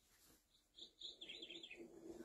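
Faint, high bird-like chirps: a few short ones, then a quick warbling trill.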